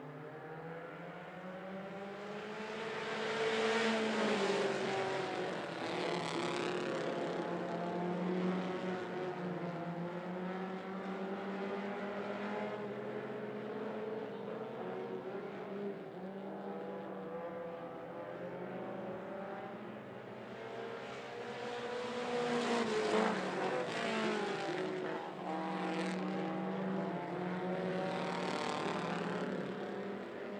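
A field of four-cylinder mini stock race cars running laps of a dirt oval, their engines swelling and falling in pitch as the pack goes by about four seconds in and again about twenty-three seconds in.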